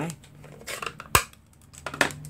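Hard plastic ink pad case being handled as its hinged lid is opened and the pad set down: a few light clicks, with one sharp click about a second in.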